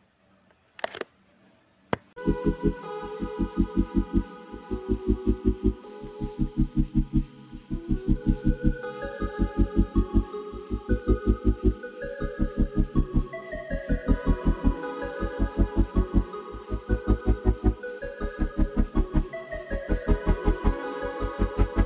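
After about two seconds of near silence, background music starts: rapid repeated bass notes, about five a second in groups with short gaps, under a melody stepping up and down.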